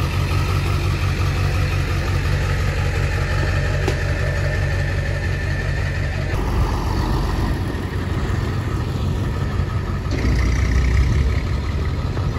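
Pickup truck engine running steadily at low revs as it tows a boat trailer over wet pavement.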